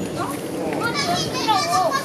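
Young children's voices: high-pitched calls and chatter with rising and falling pitch, no clear words.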